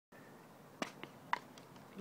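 Four sharp clicks in under a second, the first and third loudest, over a faint steady background hiss.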